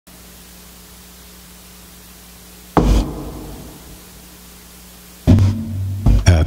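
Two keyboard chords over a steady low hum. The first is struck about three seconds in and rings out, fading over a second or so. The second, deeper one comes near the end and is held.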